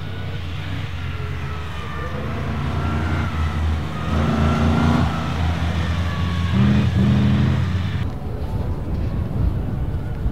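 1947 Tatra 87's air-cooled V8 engine running as the car is driven on snow. The engine note rises under throttle about four seconds in and again near seven seconds, then falls back about eight seconds in.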